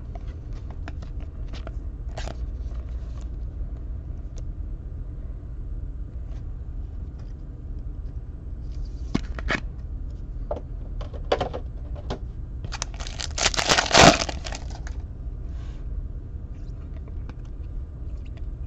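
A foil card pack torn open, a crackly rip of about a second and a half about two-thirds of the way through. Before it come scattered light clicks and slides of trading cards being handled, over a steady low hum.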